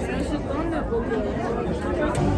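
Crowd chatter: many people talking at once in a packed stairway, overlapping voices with no single speaker standing out.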